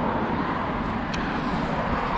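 Steady rush of road traffic, car tyre noise from a nearby road, with a small click about halfway through.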